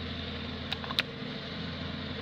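A steady low engine hum, with a few sharp clicks near the middle, the loudest about a second in.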